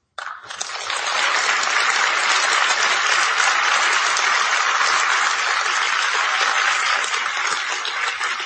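Audience applauding at the close of a speech. The clapping starts just after a moment of silence, fills out within the first second, holds steady and eases slightly near the end.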